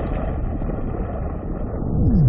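Steady deep rumble of a cinematic logo-intro sound effect.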